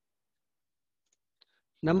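A single faint keystroke click on a computer keyboard, amid near silence.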